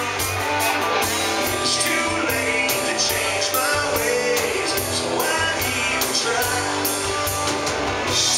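Live rock band playing: electric guitars, bass guitar and drums with cymbals keeping a steady beat, and a male lead vocal over the top.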